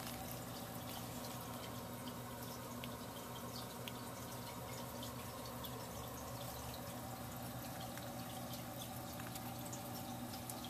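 Steady background hum with faint hiss and a few faint scattered ticks; no distinct sound event.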